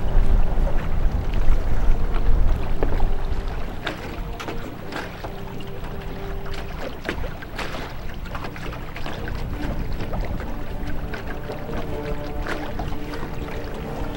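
Kayak paddles splashing and water lapping at the hulls, with wind rumbling on the microphone for the first few seconds. Soft background music with long held notes comes in after about four seconds.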